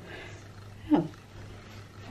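A woman's single short 'oh' about a second in, falling steeply in pitch, over faint room tone with a low steady hum.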